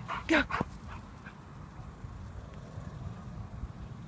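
Wind on a phone microphone, a steady low rumble, with one sharp click about half a second in.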